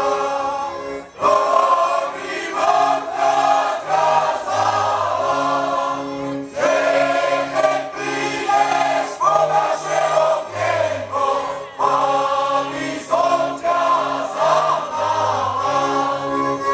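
A large group of voices singing a Slovak folk song together, with a folk string band accompanying and a bass line moving beneath the voices.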